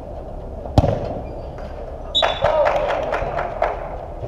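A football kicked on an indoor artificial-turf pitch, a single sharp thud about a second in. It is followed by about a second and a half of players' voices shouting.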